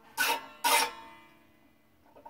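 A steel banjo string being drawn through the hole in a tuning peg: two short scraping rasps about half a second apart, each setting the Irish tenor banjo's strings ringing faintly as the sound dies away.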